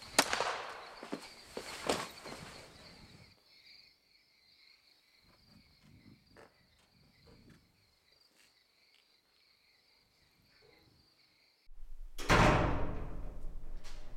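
Steady high insect drone at night, with two sharp knocks in the first two seconds and faint scattered clicks after them. Near the end a sudden loud rushing swell comes in over a low hum.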